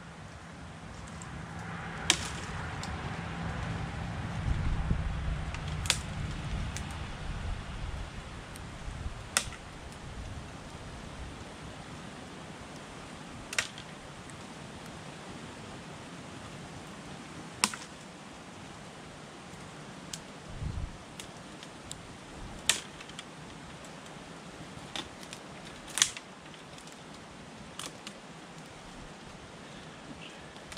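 Dry branches being snapped by hand for firewood: about seven sharp cracks, a few seconds apart. A low rumble of passing road traffic swells and fades over the first ten seconds.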